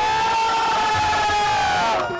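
A man's voice holding one long, high sung "aa" note in a devotional namkirtan chant, dipping slightly in pitch near the end.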